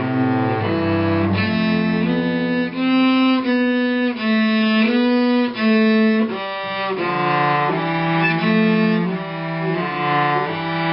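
Cello played with the bow by a young beginner: a simple tune of held notes, about two a second.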